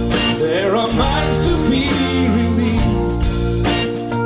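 Live band playing an instrumental passage: acoustic and electric guitars, keyboards and drums, with a bending melody line over sustained chords for the first couple of seconds.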